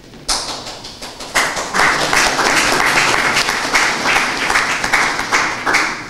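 Audience applauding: scattered claps just after the start, filling out into full applause about a second and a half in, then stopping shortly before the end.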